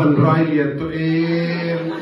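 A woman's voice through a microphone: a short utterance, then a long moan held on one steady pitch, acted as a cry of pain.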